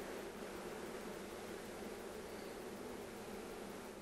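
Faint, steady hum of honey bees on the comb frames of an opened nuc, under a light hiss.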